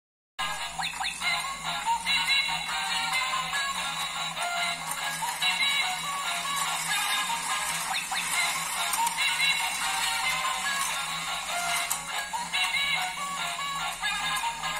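Doraemon Music Track stair-climbing ball toy playing its electronic tune through a small built-in speaker, a bright, beeping synthesized melody that runs on without a break while the toy operates.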